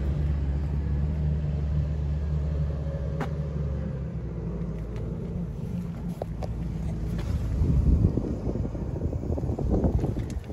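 Low, steady rumble of an idling vehicle engine, strongest in the first few seconds. Rough wind gusts buffet the microphone in the last couple of seconds.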